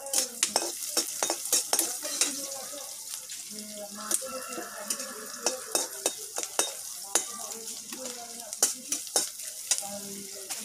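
Metal spatula stirring and scraping food in a wok, with sharp irregular clicks as it strikes the pan, over a steady sizzle of frying in hot oil.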